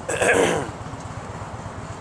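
A man clears his throat once, briefly, over the steady low pulsing idle of a 2011 Harley-Davidson Heritage Softail Classic's V-twin engine on stock pipes.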